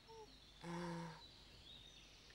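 Faint soundtrack ambience with light bird chirps. A brief low hum, lasting about half a second, comes about half a second in.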